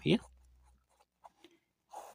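A ballpoint pen writing on paper: a few faint, short scratching strokes after a single spoken word.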